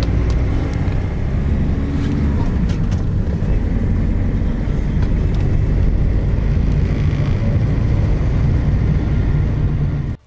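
Mercedes-Benz van driving, heard from inside the cabin: a steady low engine and road rumble.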